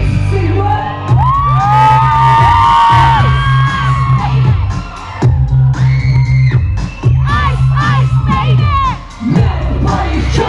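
Live pop music through a concert PA, with a heavy bass line that drops out briefly a few times, and a crowd of fans screaming and cheering close by.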